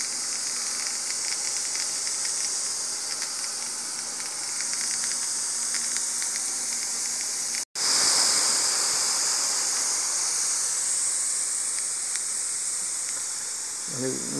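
Water spraying from a handheld garden hose nozzle onto grass: a steady hiss that drops out for an instant about eight seconds in, then carries on.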